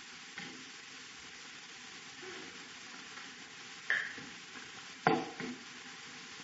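Steady background hiss of the recording, with a short sharp knock about four seconds in and a louder one about a second later.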